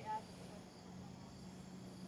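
Faint, steady chirping of crickets in the background, with a short voice sound right at the start.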